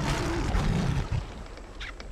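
A lion roars once for about a second, then a quieter background follows.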